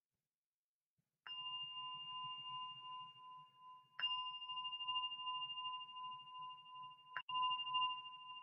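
Meditation bell struck three times, about three seconds apart. Each strike rings on in a steady, clear tone that is still sounding when the next strike comes. It is the bell that opens a meditation sitting.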